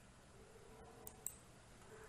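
Near silence: room tone with a faint hum, broken by a small click a little over a second in.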